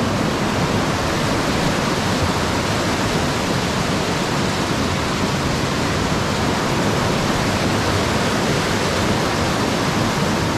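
Waterfall heard from close beside it: whitewater of a mountain creek pouring over steep rock slabs, a loud, steady rush.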